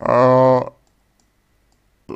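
Speech only: a man's voice holding one drawn-out syllable for under a second, then cutting to dead silence.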